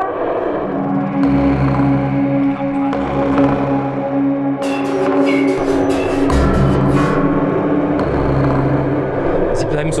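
Background music: sustained, held chords over a slow, swelling low bass.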